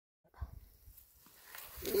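Silence at first, then a low knock and faint wet rustling as a mud-caked raccoon carcass is dragged out of a clogged plastic irrigation pipe, ending in a man's drawn-out "yeah" that rises and falls in pitch.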